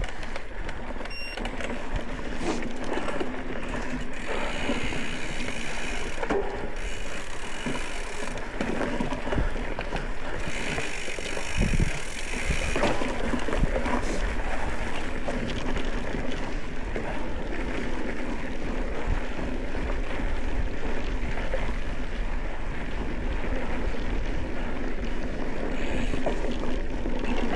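Mountain bike ridden along a dirt trail: a continuous rush of tyre noise and wind on the microphone, with short rattles and knocks from the bike over bumps.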